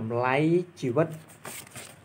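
Speech: a man talking in Khmer, with a brief hiss near the end.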